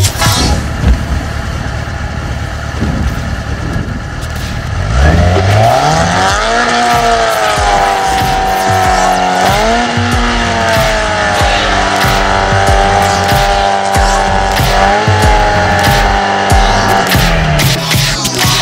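Sport motorcycle engine revving up steeply about five seconds in and held at high revs, with short blips, as the rear tyre spins in a burnout.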